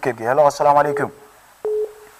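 A man speaking, then about a second and a half in a short, steady single-pitch telephone beep on the studio's phone line as a phone-in call comes through.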